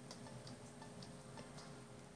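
Near silence with faint, light ticks or clicks, a few a second, over quiet room tone.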